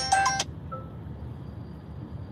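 A mobile phone ringtone playing its melody, cut off abruptly about half a second in, leaving the low steady rumble of the van's cabin on the move.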